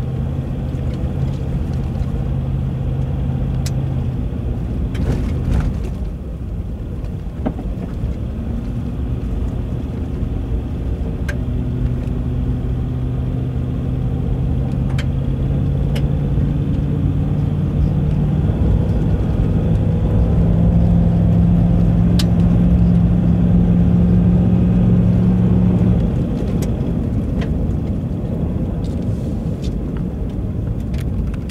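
Car engine and tyre noise on an unpaved clay road, heard from inside the vehicle. The engine note dips early, then climbs steadily and is loudest for several seconds before dropping off abruptly a few seconds before the end as the car slows. A few sharp ticks can be heard over it.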